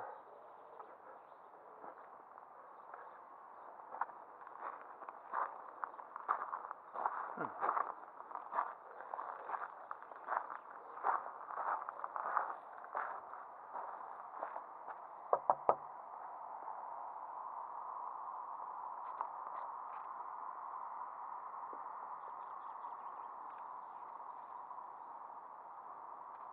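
Footsteps crunching on a gravel driveway, irregular steps, then a few quick knocks on a house door about halfway through. After the knocks only a steady faint hiss of background noise remains.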